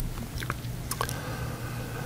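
A few soft, short clicks over a steady low hum, typical of computer mouse clicks and small mouth noises during a pause in screen-recorded narration.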